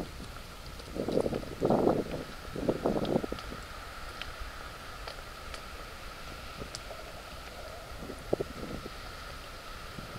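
Wind buffeting the microphone in several gusts over the first three seconds and once more near the end, over a low steady wind rumble.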